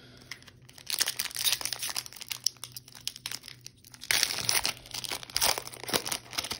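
A trading card pack's wrapper being crinkled and torn open, with dense crackling starting about a second in and getting louder from about four seconds in.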